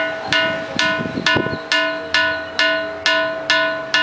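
A boulder struck repeatedly with a hand-held stone and ringing like a bell: about two strikes a second, each giving a clear chime of several steady tones that fades away before the next strike.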